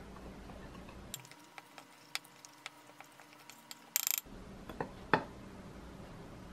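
A metal spoon clinking against a glass mixing bowl while stirring dry almond flour: scattered light clicks, a quick run of clicks about four seconds in, then two sharper knocks near the end.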